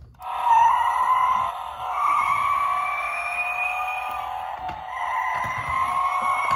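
Electronic sound effect from a toy Batmobile's small built-in speaker: a long, wavering recorded tyre squeal, as of a car doing donuts. It starts a moment in and keeps going.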